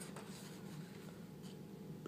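Faint rustle and brushing of a picture-book page being turned by hand, with a couple of soft clicks.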